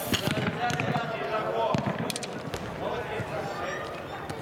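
Footballers shouting and calling to one another in a large, echoing dome, with a few sharp knocks of a football being kicked, mostly about two seconds in.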